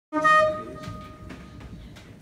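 A single held musical note with a clear pitch, loudest at the start and fading out over about a second. Faint room noise and a couple of soft knocks follow.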